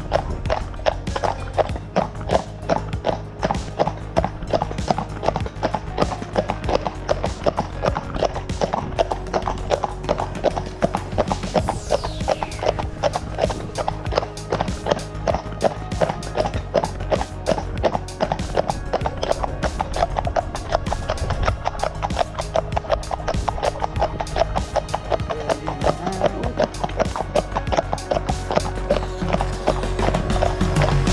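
Two Shire horses trotting together on a tarmac road, their hooves striking in a rapid, even clip-clop, over background music.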